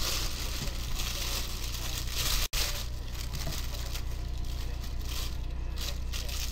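A thin plastic bag crinkling steadily as the football helmet inside it is handled and turned. The sound cuts out for an instant about two and a half seconds in.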